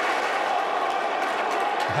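Football crowd applauding and cheering a goal, a steady even wash of clapping and voices.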